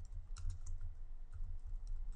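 Computer keyboard typing: a run of faint, irregular keystrokes over a low steady hum.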